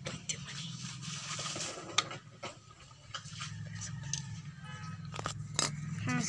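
Plastic clicks and light scraping from handling a Beyblade launcher, fitting a top onto it and working its toothed ripcord, with one sharp click about two seconds in, over a steady low hum.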